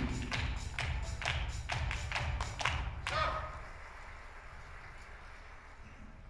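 Spectators clapping for a scored billiards point. The claps are quick and even, and die away about three seconds in, leaving a low hum from the hall.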